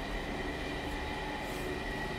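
Steady mechanical hum with a faint, constant high-pitched whine running through it.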